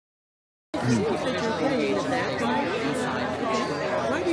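Dead silence for under a second, then several voices talking over one another, with a cough about a second in.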